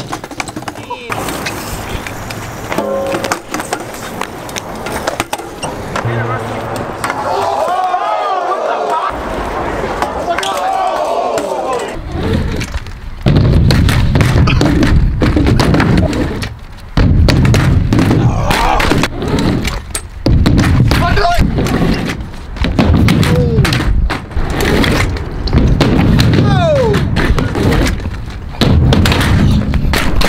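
BMX bike tyres rolling on skatepark ramps and pavement, with knocks and clatters from the bikes and people's voices.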